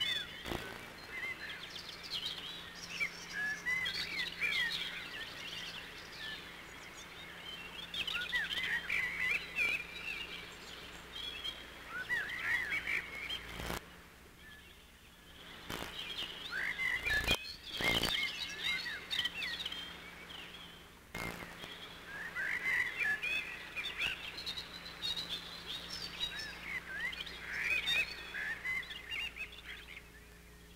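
Many birds chirping and singing together in a woodland chorus, with a steady low hum underneath. A few sharp clicks come near the middle, where the birdsong briefly drops away.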